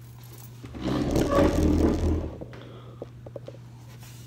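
Muffled rustling and rumbling for about a second, then several light clicks, over a steady low hum.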